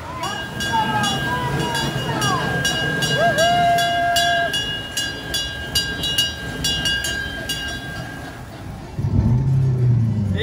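A small bell rung over and over, about two to three strikes a second with each ring carrying on, as a small ride train pulls away, with voices calling out over the start. The ringing stops near the end.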